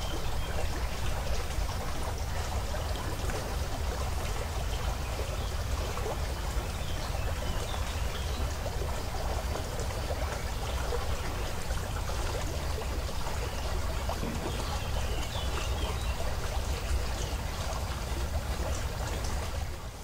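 Spring water of a fontanile (a lowland resurgence spring) flowing steadily: a continuous rush of running water with a steady low rumble underneath.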